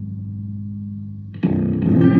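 Fretless baritone electric guitar playing atonally: a low note sustains and slowly fades, then a new note is plucked sharply about one and a half seconds in and rings bright with overtones.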